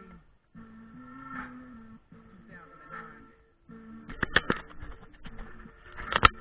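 Hip-hop backing track without vocals: sustained synth tones over a steady beat, with a few hard drum hits about four seconds in.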